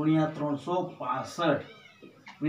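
A man's voice speaking, in short phrases with some drawn-out vowels.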